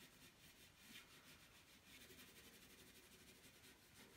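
Near silence, with faint repeated scratching of a graphite pencil shading on paper.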